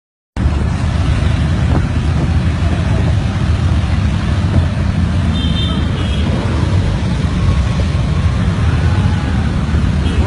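A large group of motorcycles riding together at low speed: many engines rumbling at once in a dense, steady low drone that starts abruptly.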